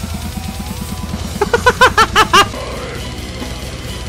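Heavy metal band recording: very fast drumming in an even stream of strokes with electric guitar. About halfway through there is a loud burst of quick, bent notes that swoop up and down.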